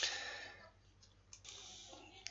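Faint computer mouse clicks, a few scattered ticks in the second half, as the document is scrolled; a soft rush of noise at the start.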